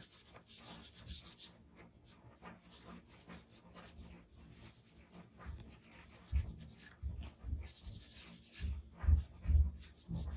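A soft-tipped blending tool rubbing charcoal into drawing paper: a run of short, scratchy swishing strokes. In the second half several soft low thumps come in, and the loudest two fall near the end.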